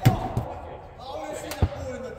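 A football being struck and bouncing on an indoor court: a sharp thud at the start, a lighter one just after, and another about a second and a half in, in a large indoor sports hall.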